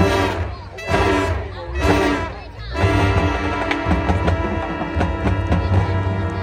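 Marching band's brass and drum line playing: three loud accented chords about a second apart, then a long held chord with drums beating under it.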